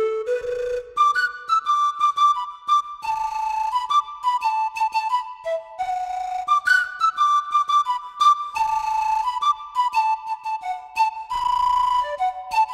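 Background music: a flute playing a melody of short notes that step up and down, some held notes carrying a breathy edge.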